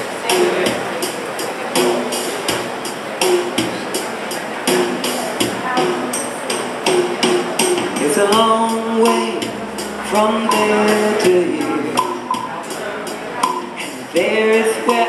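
Gourd shaker keeping a steady beat, joined about eight seconds in by a voice singing.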